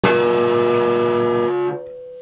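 Opening chord of a song, played on guitar: struck at once and held steady for about a second and a half, then cut short, leaving one note ringing faintly.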